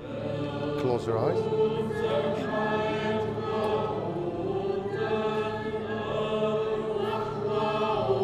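A choir sings a slow, chant-like Maronite liturgical hymn in long held notes over a steady low accompaniment.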